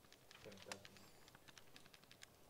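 Faint, irregular clicks of calculator buttons being pressed, one after another.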